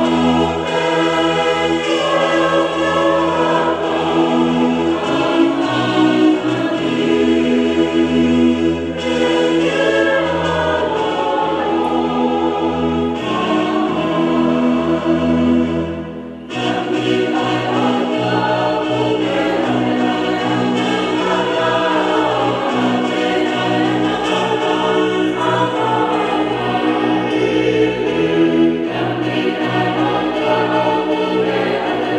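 A choir singing over long held chords, with a short dip in loudness about halfway through.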